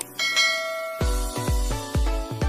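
A click, then a bright bell-like notification chime sound effect that rings and fades. About a second in, music with a heavy, regular bass beat comes in.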